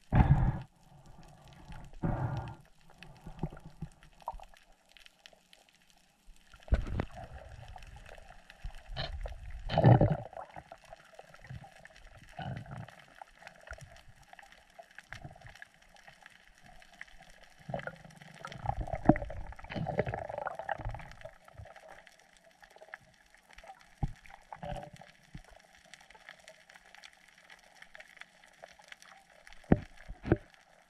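Muffled underwater noise picked up by a camera in its waterproof housing while swimming over a reef: irregular surges of water rushing past, strongest about seven to ten seconds in and again around the twenty-second mark, over a faint steady hum.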